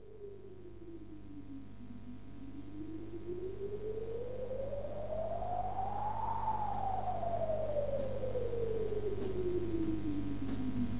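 Electronic intro sound: a single synthesizer tone that dips, then glides slowly up in pitch to a peak a little past the middle and slowly back down, over a steady low hum, growing louder throughout as it fades in.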